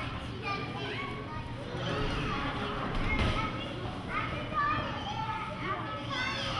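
A small audience of adults and children chattering and calling out over one another; no single voice stands out.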